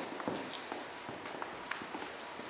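Footsteps of several people walking across a hard floor, a scatter of light irregular taps.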